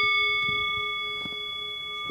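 Metal singing bowl ringing after one strike with a wooden striker: a clear note with several higher overtones sounding at once, slowly fading.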